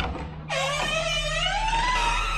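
The metal lever handle and latch of a wooden door click, and about half a second later a long creak starts that rises in pitch as the door swings open.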